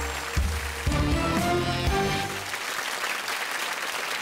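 Studio audience applauding over a short music sting with a heavy bass line; the music fades out about halfway through, leaving the applause.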